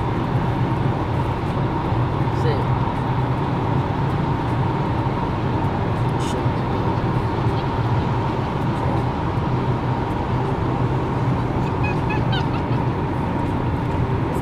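Steady road and engine drone inside a moving car's cabin: a low hum with a faint steady higher whine running through it.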